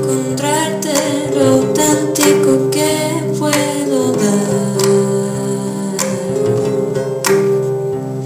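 A live song: a singer's voice on a hand-held microphone, over a steady instrumental accompaniment with guitar-like plucked strings.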